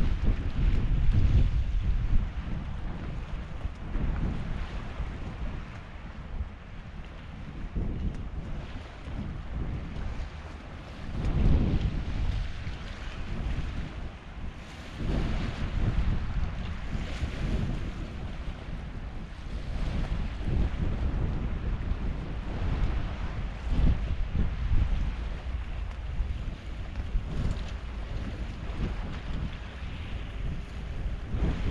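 Wind buffeting the microphone in gusts that come and go every few seconds, over the steady wash of small waves on a stony estuary shore.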